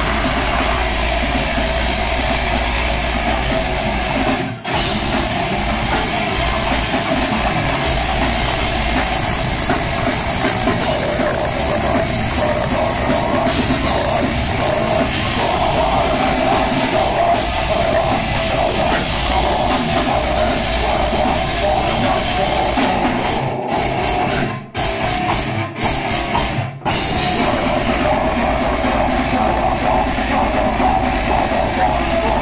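Live death metal band playing loud, heavy music: distorted electric guitars, bass and a drum kit, with a vocalist at the microphone. The band breaks off briefly about four and a half seconds in, and again in several abrupt stop-start hits around twenty-four to twenty-seven seconds in.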